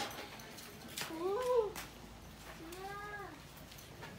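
An animal calling twice, about a second apart, each call a short rise and fall in pitch in the manner of a cat's meow.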